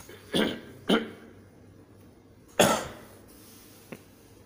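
A person coughing three times: two coughs about half a second apart, then a third a second and a half later.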